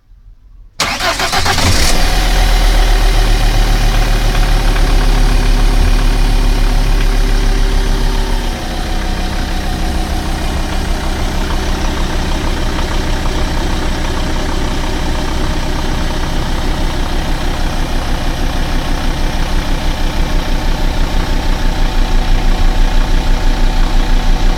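Volvo Penta inboard marine engine starting from cold: it cranks briefly and catches about a second in, then runs at a raised fast idle. About eight seconds in it settles to a lower, steady idle.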